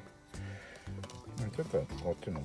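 Background music with a man's voice talking over it, the talk resuming about halfway through after a short pause.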